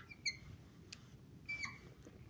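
Dry-erase marker squeaking faintly on a whiteboard as it writes: a short squeak near the start, a light tick about a second in, and a longer squeak about a second and a half in.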